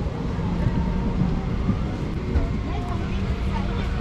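Steady low hum and rumble inside an airliner's cabin while it is parked at the gate with the engines not running, the sound of the cabin ventilation, with faint passenger voices behind it.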